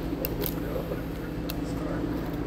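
Steady low hum of a restaurant's ventilation or air conditioning, with a few faint clicks about a quarter second, half a second and a second and a half in.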